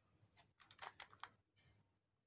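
Faint pen-on-paper writing: a quick run of short scratchy strokes through the first second or so, then fading out.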